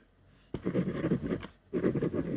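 Ballpoint pen writing on white paper laid on a desk, a run of scratchy strokes that starts about half a second in, breaks off briefly, and picks up again near the end.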